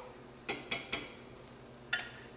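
Kitchen cookware and utensils knocking lightly: three quick clinks close together about half a second in, and one more near the end, as a metal spoon and small saucepan are handled.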